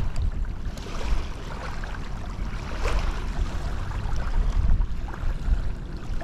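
Wind rumbling on the microphone over the steady wash of shallow, outgoing tidal water, with a few faint ticks.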